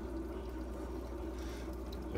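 Steady trickle of water running in an aquarium, over a constant low hum.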